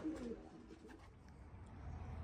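Faint, low cooing of racing pigeons in the loft, fading out within the first second and leaving near quiet.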